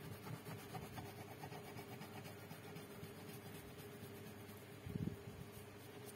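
Faint, rapid scratching of a crayon stroked back and forth on paper while shading in a picture, with a soft low thump about five seconds in.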